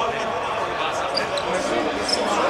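Players' voices and court noise echoing in a large indoor basketball hall, with a couple of short high squeaks about a second in.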